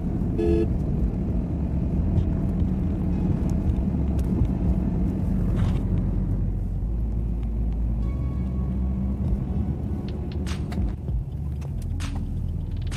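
Car cabin road noise while driving at speed: a steady low rumble of engine and tyres, with a few faint knocks.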